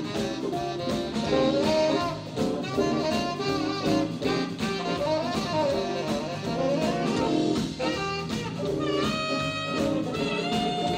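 Live band playing an instrumental passage: tenor saxophone playing a winding melodic line over drum kit, electric guitar and electric keyboard, with a long held note near the end.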